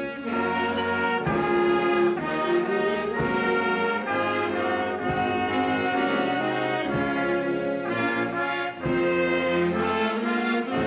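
Wind band of saxophones, trumpets and other brass playing a slow hymn in full, sustained chords, with a light accent about every two seconds.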